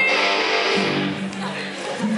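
A live band playing a song, with strummed electric guitar over drums and a horn section.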